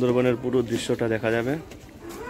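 Voices singing a repeated devotional chant (kirtan) over a steady low held note, breaking off about one and a half seconds in.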